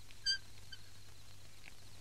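A bird's short, high chirp a moment in, then a fainter one just after, over a low steady hum.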